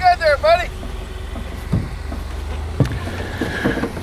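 A motor vehicle's engine running with a steady low rumble, fading out near the end. A few syllables of a voice are heard in the first second.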